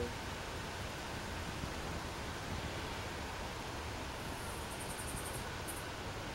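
Steady, even outdoor background hiss with no distinct source, and a faint high, rapidly pulsing sound from about four seconds in until shortly before the end.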